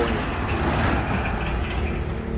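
Steady low rumble of motor vehicle engines with a haze of road noise.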